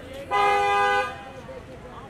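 A car horn sounds once in a steady two-note honk lasting under a second, with street chatter behind it.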